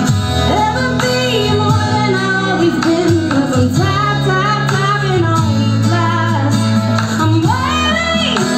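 A woman singing live into a microphone over steady instrumental accompaniment, with held notes and a sharp rise in pitch near the end.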